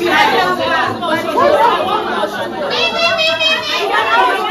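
Women's voices talking and calling over one another in lively chatter. About three seconds in there is a high, wavering sound lasting about a second.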